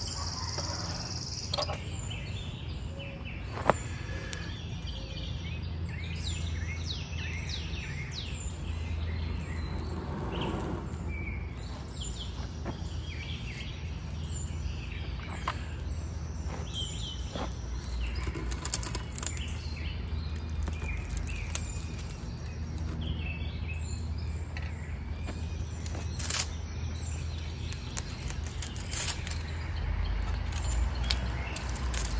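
Outdoor ambience: small songbirds chirping in short, repeated calls over a steady low rumble, with a couple of sharp clicks.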